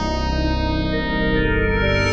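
Yamaha DX7 IID FM synthesizer playing a sustained chord patch recorded direct, with a gritty, guitar-like edge. Its bright upper overtones fade away, and the chord changes about halfway through.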